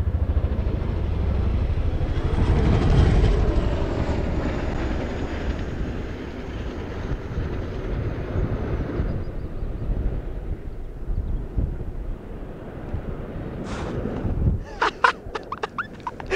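Boeing CH-47 Chinook tandem-rotor military helicopter flying past, with the rapid beat of its rotors and engine noise. It is loudest a few seconds in, then fades away as it moves off.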